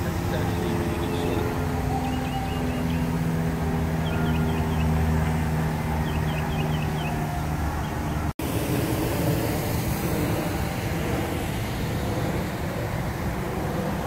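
Steady hum of road traffic with an engine drone under it, and a few faint high chirps. The sound cuts out briefly about eight seconds in.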